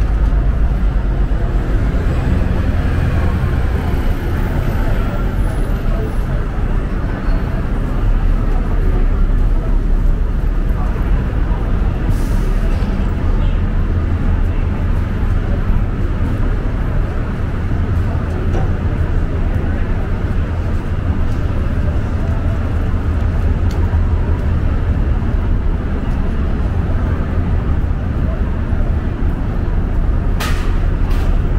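Downtown street ambience: a steady low rumble of road traffic, with indistinct voices of people nearby.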